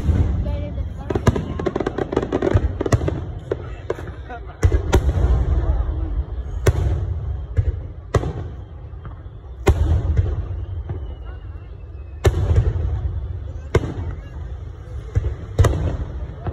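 Aerial firework shells bursting overhead: about a dozen sharp booms at uneven intervals, with a patch of rapid crackling in the first few seconds and a low rumble carrying between the bangs.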